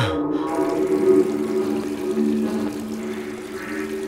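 Water from a tap starts running about half a second in and pours steadily into a basin. Under it is background music with sustained low tones.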